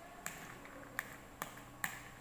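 Four light, sharp clicks, irregularly spaced, as hands work loose corn kernels in an aluminium basin.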